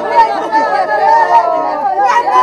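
Several women's voices wailing and lamenting at once in mourning, overlapping with held, wavering cries.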